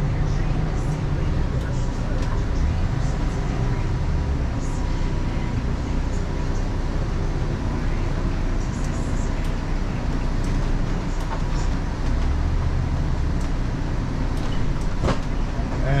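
Steady low drone inside the cab of a Jayco Alante Class A motorhome, its V10 gas engine running at low parking-lot speed as it is maneuvered into a space, with a faint steady tone above the rumble.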